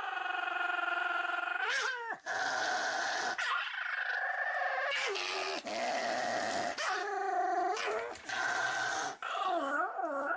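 Pomeranian whining in a string of long, drawn-out cries, each held a second or two, the last few wavering up and down in pitch.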